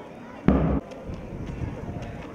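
A single loud thump about half a second in, lasting about a third of a second, over faint voices in the background.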